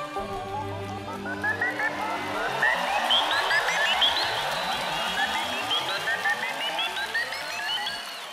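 Electronic synthesizer music played live: many short, bright synth notes in quick runs that climb upward again and again, over a dense wash of sound.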